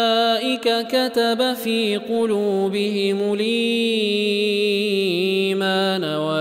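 A male reciter chanting the Qur'an in melodic tajweed style, Warsh reading. A run of quick, clipped syllables in the first two seconds gives way to long drawn-out notes that bend slightly in pitch.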